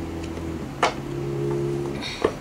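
Soft background music with held notes, and a single sharp tap a little under a second in as a tarot card is laid down on the table.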